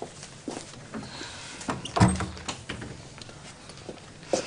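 A wooden door being pushed shut, closing with a thud about two seconds in, after a few lighter clicks and knocks.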